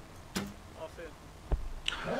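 A recurve bow shot, faint: a sharp click of the arrow's release, then a single sharp knock about a second later.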